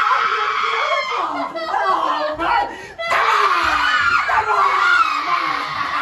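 Several people screaming loudly in staged horror-scene terror, the screams overlapping. There is a short break about halfway through, then the screaming starts again.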